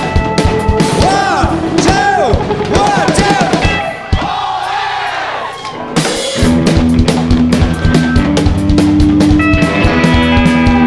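Rock band music: a singer's voice swooping up and down over drums, easing off about four seconds in, then the full band with guitar and drums comes back in about six seconds in.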